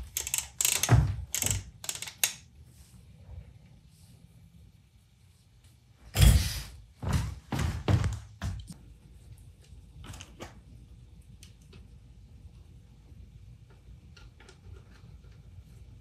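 Hand tools and metal parts knocking and clunking on a workbench as a mixer is taken apart by hand, in two bursts of knocks: one at the start and a louder one about six seconds in. Only faint small clicks follow.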